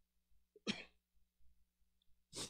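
A single short, faint throat noise from a man close to a handheld microphone, about two-thirds of a second in. Otherwise near silence, with a faint low hum.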